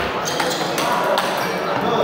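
Table tennis rally: a few sharp clicks of the plastic ball striking the rubber paddles and bouncing on the table, over the murmur of voices in a large hall.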